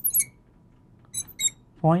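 Marker squeaking on a glass lightboard in two short bursts of high, thin squeaks as letters and numbers are written, followed by a spoken word near the end.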